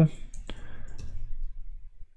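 A handful of separate key clicks on a computer keyboard as a short command is typed.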